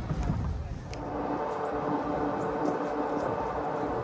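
Electric golf cart (2008 Club Car DS, stock DC motor) driving along the road. After a click about a second in comes a steady whine of several pitches from the motor and drivetrain, over tyre and wind noise.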